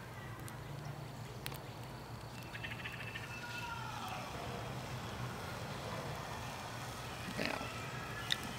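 Bacon sizzling in a small 8-inch cast iron Dutch oven, a steady hiss that grows slightly louder as more pieces go in. About three seconds in, a brief falling animal call sounds in the background.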